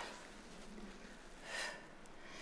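Faint room tone, with one short breath from a woman exerting herself in a push-up, about one and a half seconds in.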